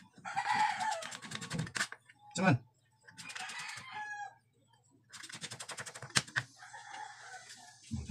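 A cleaver chopping garlic on a plastic cutting board in quick, repeated strokes, while a rooster crows three times.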